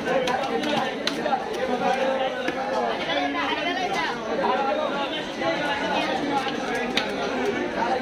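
Steady background chatter of many voices, with a few sharp knocks of a heavy knife chopping through fish on a wooden block.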